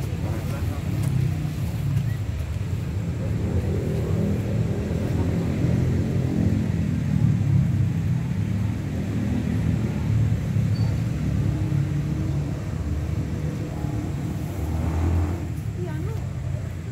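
Indistinct voices outdoors over a steady low rumble.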